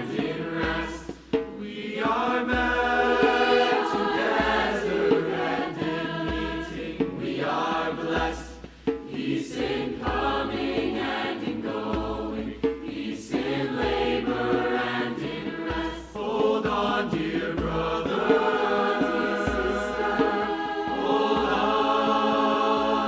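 Mixed-voice choir singing in harmony, several parts together, in phrases broken by brief pauses about every seven seconds.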